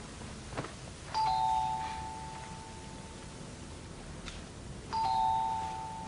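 Two-tone ding-dong doorbell chime rung twice, about four seconds apart; each time a higher note is followed by a lower one, and both ring on and fade.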